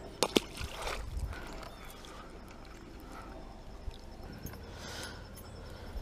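A released pickerel drops from the hand and splashes into the water just after the start, a brief sharp splash. After that only faint water sounds and a few small clicks.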